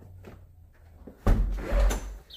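A door being opened: a loud rumbling knock and rustle that starts suddenly about a second and a quarter in, after a quiet first second.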